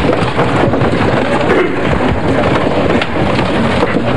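Audience applauding, a dense, steady clatter of clapping at an even level.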